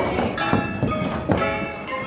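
Bright, bell-like chiming music with a few knocks and thuds, the sound of skee-ball arcade machines in play.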